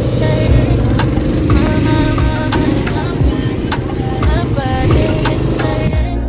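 Go-kart engine running close by, a loud rough rumble that starts suddenly and lasts about six seconds, with background music and singing over it.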